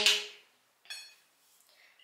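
A pause in speech, broken about a second in by one brief, faint light clink as small glass dropper bottles and a skincare tube are picked up.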